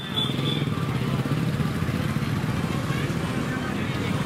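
A steady engine running with a low, fast-pulsing hum, with people's voices mixed in.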